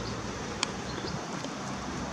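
Steady low street background noise between words, with a single faint click a little over half a second in.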